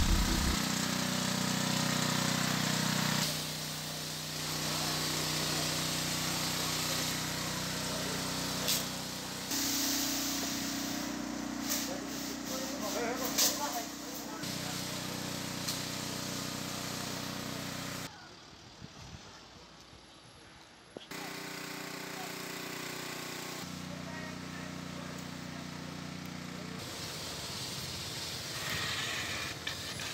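Field sound from several cut-together shots: a civil-protection truck's engine and spray pump running steadily, with the hiss of a disinfectant hose and people talking at times. The sound changes abruptly at each cut, and one short stretch is quieter.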